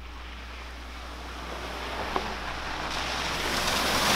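An SUV drives toward the camera on a wet gravel road. Its tyre and road noise grows steadily louder. Near the end it ploughs into a deep roadside puddle, and a hissing spray of water begins.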